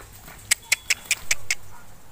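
A quick run of six sharp clicks, about five a second, lasting about a second.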